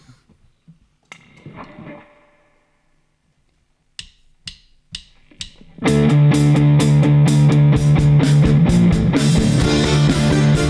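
Four evenly spaced clicks, a drummer's stick count-in, then about six seconds in a live studio band starts a song: electro-acoustic guitar, bass guitar and drum kit playing together.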